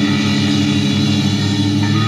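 Loud live rock music: amplified electric guitar and bass sustaining a steady droning chord.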